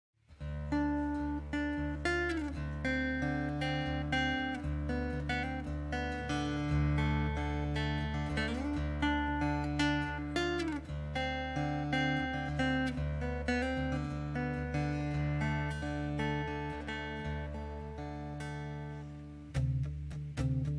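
Solo acoustic guitar intro, individually picked notes ringing over sustained low bass notes, with two short sliding notes along the way. It begins about half a second in.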